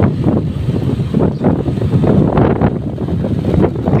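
Wind buffeting the microphone: a loud, irregular, gusty low rumble.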